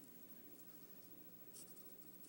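Faint scratching of a pencil drawing lines on a paper pad, with one brief louder stroke near the end.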